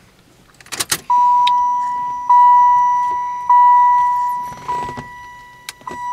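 Keys jangle and click into the ignition of a 1995 Cadillac Fleetwood. The car's dashboard warning chime then sounds as the key is switched on: one steady tone struck again about every 1.2 seconds, five times, each strike fading.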